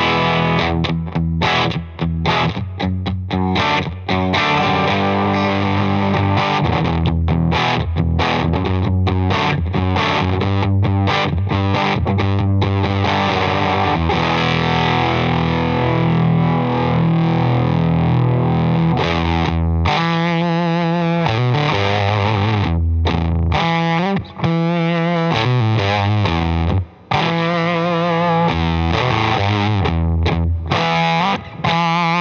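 Electric guitar played through a Wrought Iron Effects H-1 fuzz pedal, built on four NOS Soviet germanium transistors, into a Benson Amps Vincent amplifier: heavily fuzzed chords and riffs. The playing is choppy with short stops in the first few seconds, then turns to held chords whose pitch wavers in the last third, broken by two brief stops near the end.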